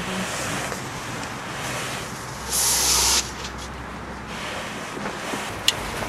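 A nylon inflatable air lounger being swung open to scoop air in: a steady rustle of fabric, with a louder hissing rush of air for under a second about halfway through, and one sharp click near the end.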